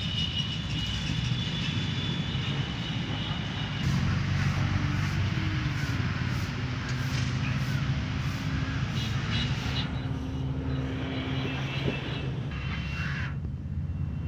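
A steady low engine rumble with a humming tone, growing louder about four seconds in and easing off again near ten seconds.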